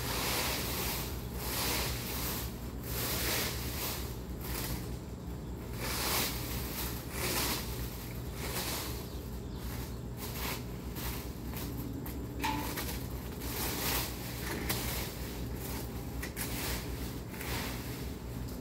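A rake scraping through a deep layer of dry fallen leaves in repeated strokes, about one a second.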